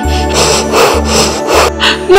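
Soft background music with a steady low drone, with a rasping, rubbing sound repeating about two or three times a second over it.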